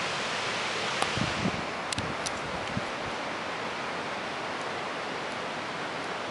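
Steady rushing noise, like fast-running water, with a few faint clicks about one to three seconds in.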